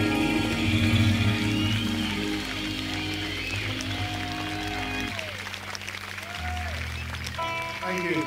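Live rock band playing held keyboard chords over bass, with a few gliding tones; most of it drops away about five seconds in, leaving a low bass note and then fresh held tones near the end.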